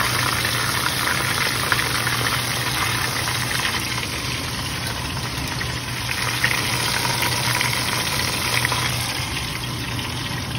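Canola oil deep-frying battered chicken in a Dutch oven, sizzling and crackling steadily as the pieces are lifted out with tongs, with a few small sharp ticks and a low steady hum underneath.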